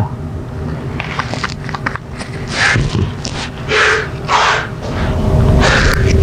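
Brush stirring and scraping leather dye and primer together on a plastic palette. It gives a series of short scratchy swishes, about half a second apart, in the second half.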